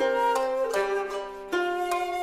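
Traditional Japanese music on plucked string instruments: a few plucked notes, struck near the start, about a third of a second in and about a second and a half in, each ringing on into the next.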